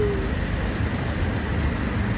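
Steady rumble of road traffic on a busy city street.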